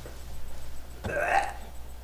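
A person's brief non-speech vocal sound about a second in, after the guitar playing has stopped.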